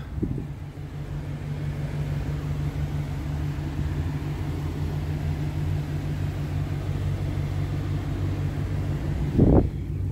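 2021 GMC Yukon XL's engine idling, a steady low hum, with a brief thump near the end.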